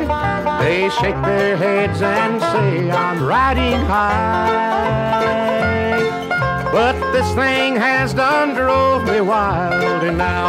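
Instrumental bluegrass: banjo and guitar over a walking bass, with a lead line that slides between notes.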